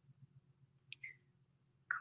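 Quiet faint low hum, with two small short clicks, one about a second in and one just before the end.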